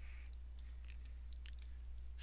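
Quiet recording room tone: a low, steady electrical hum with a few faint, short ticks scattered through it.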